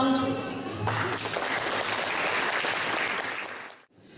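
Audience applauding, starting about a second in after a sentence of speech and cutting off suddenly near the end.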